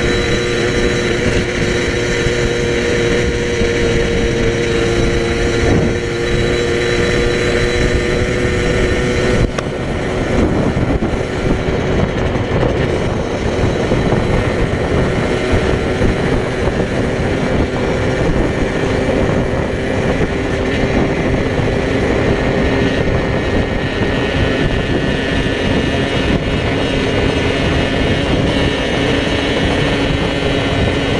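Motorcycle engine running at a steady cruising speed, with wind rush over the microphone. About nine and a half seconds in the engine note changes and settles lower.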